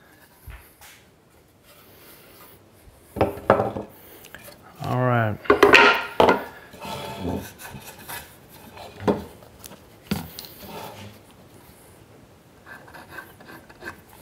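Wooden sawhorse parts knocking and rubbing together as a glued tenon is worked into a mortise, with a brief pitched squeal about five seconds in and a few sharp knocks later on.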